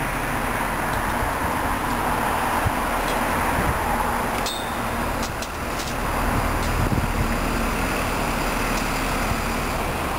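Steady road-traffic noise that dips briefly about halfway through and then swells again.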